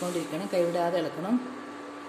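A voice speaking for about the first second and a half, over a steady hum from the induction cooktop running under the pot; after that only the hum is heard.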